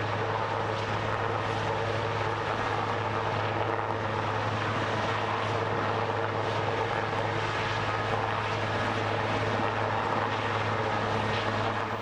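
Steady drone of a military aircraft's engines, a low hum that holds one pitch with no change in level.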